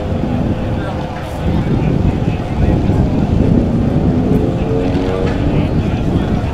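A pack of USRA Tuner compact race cars running together on a dirt oval, their four-cylinder engines giving a steady drone. Some engine notes climb in pitch about four to five seconds in as cars accelerate.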